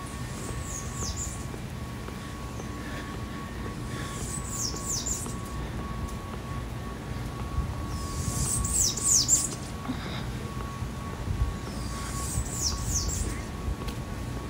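A bird calling outdoors in four short runs of high, quickly falling notes, about one run every four seconds, over a faint steady hum.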